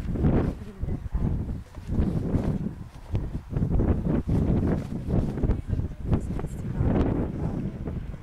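Wind buffeting the microphone in uneven gusts, a low rumbling rush.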